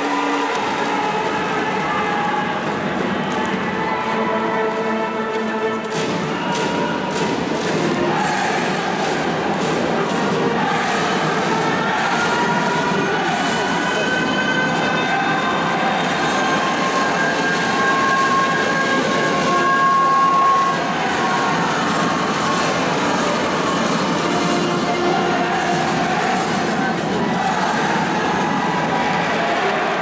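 Ballpark game siren wailing through a large domed stadium over crowd noise: it starts about ten seconds in, rises in pitch, holds a steady wail and cuts off about twenty-one seconds in. This is the siren that marks the start of a Japanese high school baseball game.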